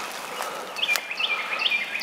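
Songbird chirping: a quick series of short, high chirps starts about a second in, over steady outdoor background noise.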